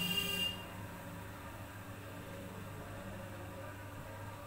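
A brief high-pitched tone in the first half second, then steady low hum and hiss of room noise.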